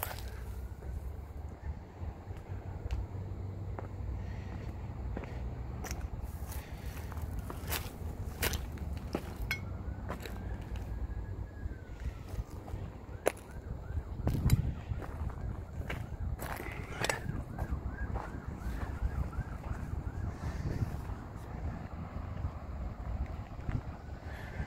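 Wind buffeting the microphone outdoors, a steady low rumble, with scattered light clicks and a louder bump about halfway through.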